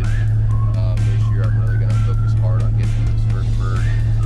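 Steady low drone of a vehicle running, heard inside its cab, with a man's voice and background music over it.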